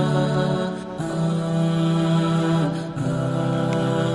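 Vocals-only nasheed playing as background music: sung voices holding long notes, moving to a new note about a second in and again near three seconds.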